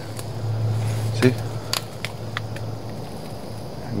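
Brush noise from twigs and branches rubbing and snapping close by, with a few sharp clicks, over a steady low hum.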